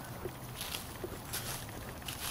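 Faint footsteps on a gravel pad as a person walks along, two soft crunches standing out over a low background hiss.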